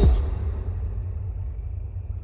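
A deep low boom as the music cuts off, leaving a low rumble that slowly fades away.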